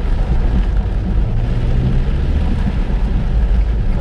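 Steady car-cabin noise while driving on a wet road in heavy rain: a low engine and tyre rumble with a faint hum, under the hiss of rain and spray on the car.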